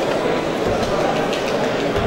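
Steady, loud din of many overlapping voices from an audience in a large hall, with a couple of low thuds.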